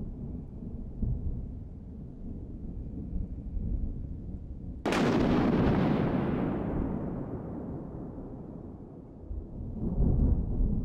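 A sudden loud boom about five seconds in that fades slowly over about four seconds, its high end dying away first, over a steady low rumble.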